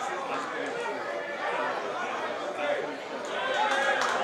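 Live football-ground sound: overlapping shouts and chatter of players on the pitch and a small crowd of spectators, growing a little louder near the end.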